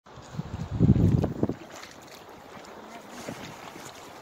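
Wind buffeting the phone's microphone in a loud, low rumble for about a second, then dropping to a faint, steady hiss of breeze.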